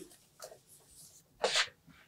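Whiteboard eraser wiping across the board: mostly quiet, with faint light contacts and one brief swish about one and a half seconds in.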